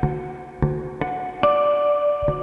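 Guitar picking a slow figure of single ringing notes, about two a second, with a lower note sounding under some of them.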